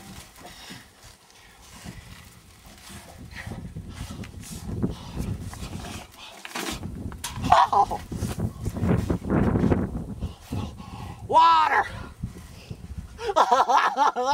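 A man's wordless cries, high and sliding down and up in pitch: one about halfway through, a louder one near the end, and more at the very end. Under them runs a rough rustling noise.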